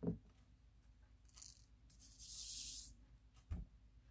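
Small resin diamond-painting drills rattling in a plastic tray for just under a second, with a shorter rattle before it. A soft knock at the start and another near the end.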